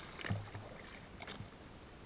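Pool water splashing and churning after a jump into a swimming pool, heard by a camera at the waterline, with a few short knocks, the loudest about a third of a second in.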